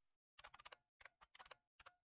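Very faint computer keyboard typing, in three short runs of quick keystrokes.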